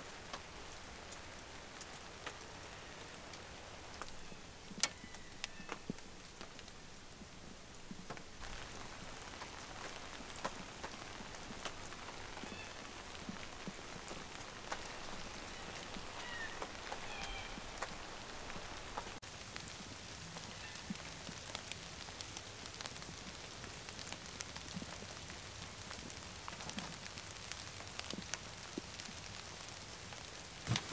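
Light drizzle falling: a faint, steady hiss with scattered ticks of single drops.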